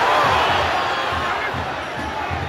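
Football stadium crowd roaring and shouting, swelling at the start as the attack breaks, with a steady run of low thumps about three a second underneath.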